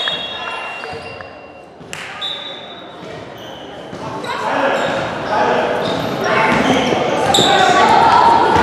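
A basketball bouncing on a hardwood gym floor, with indistinct voices of players and spectators echoing through a large hall; the voices grow louder about halfway through.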